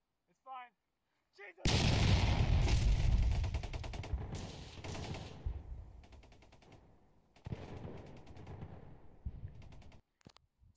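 Two bursts of rapid automatic gunfire, probably a machine-gun sound effect laid over the footage. The first starts abruptly about two seconds in and dies away over several seconds; the second starts near the three-quarter mark. Just before the first burst there are two short yelping cries.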